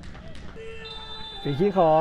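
Low match ambience from a football broadcast, with a few faint knocks and a couple of faint steady tones. A man's commentary resumes about one and a half seconds in.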